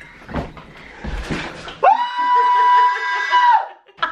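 A child screaming outside: one long, high, steady-pitched scream of nearly two seconds, starting about two seconds in and cutting off sharply. Rustling comes before it.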